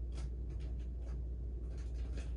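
A few faint, brief scratchy rustles in a cloth hammock, over a steady low hum.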